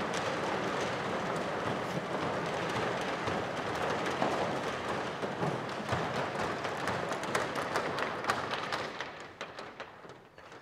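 Motorized metal roller shutter door rolling up: a steady running noise with the slats rattling and clicking, fading away near the end as it stops.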